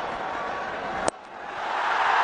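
Stadium crowd noise, then a single sharp crack of a cricket bat striking the ball about a second in. Crowd cheering swells after it as the ball is hit for six.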